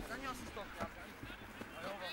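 Faint, distant voices of young rugby players calling during open play on a grass pitch, with a single soft knock just under a second in.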